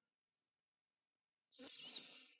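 Near silence, then about one and a half seconds in, a short, soft breath drawn in by the narrator before speaking again.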